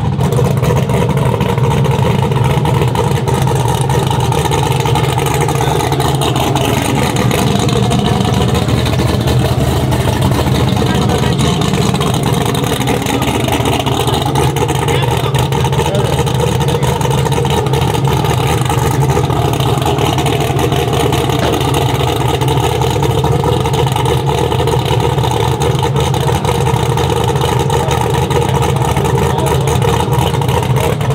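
Twin-turbo LSX V8 engine of a drag-race Chevy Silverado idling steadily, with muffled voices under it.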